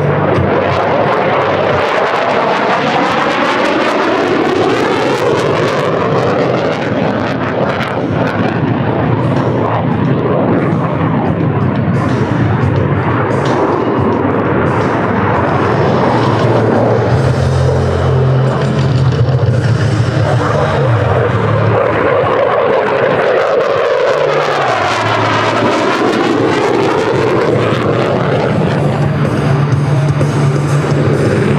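Saab JAS 39C Gripen's single afterburning turbofan jet engine, loud throughout as the fighter manoeuvres and passes, its roar swelling and fading with sweeping whooshes as it goes by.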